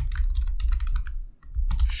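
Typing on a computer keyboard: a quick run of keystroke clicks that stops briefly about a second and a half in.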